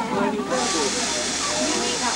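Steam train letting off steam: a steady hiss that starts suddenly about half a second in, with people talking over it.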